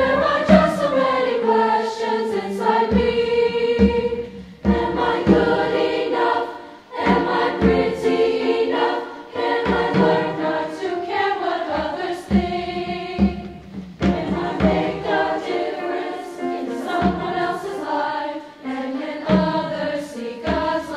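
A girls' treble choir singing in several parts, with piano accompaniment under the voices.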